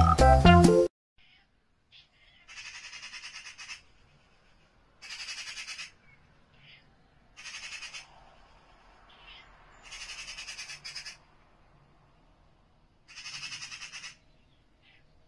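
Music cuts off about a second in. Then comes an animal call, repeated five times: short rasping, rattled bursts of about a second each, some two to three seconds apart.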